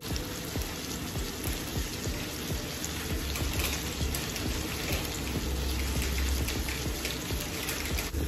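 Salmon pieces frying in hot oil in a stainless steel skillet: a steady sizzle with fine crackling throughout.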